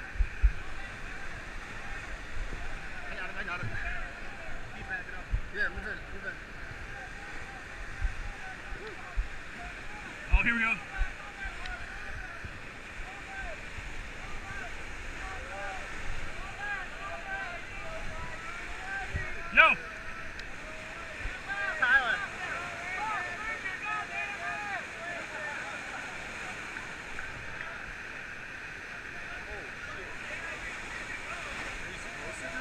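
Steady rush of whitewater rapids with the indistinct chatter of many people nearby, broken by a few sudden loud knocks or shouts, the loudest about ten seconds and twenty seconds in.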